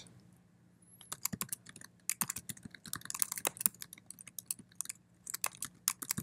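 Typing on a computer keyboard: after a quiet first second, quick runs of key clicks for about three seconds, a short pause, then a few more keystrokes near the end.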